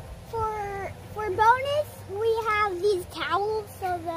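A young child's high-pitched voice: several short sliding vocal sounds with no clear words.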